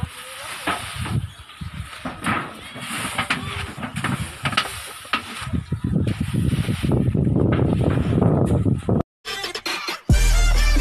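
Rustling and knocking of rice sacks being handled on tarps, with a low rumble that grows louder in the second half, then a sudden cut to silence shortly before the end.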